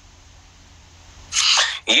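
Quiet room tone, then about a second and a half in a single short, loud, breathy burst of air from the man, just before he starts talking again.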